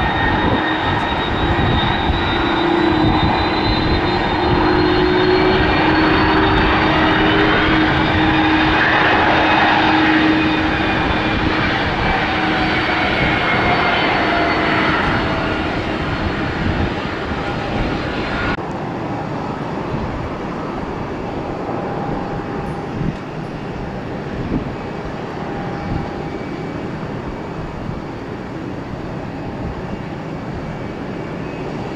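Airbus A330's twin jet engines running at taxi power as it rolls past, a steady rumble with whining tones that drift in pitch, loudest about a third of the way in. About two-thirds through, the sound cuts abruptly to a quieter, duller jet rumble of an airliner on approach.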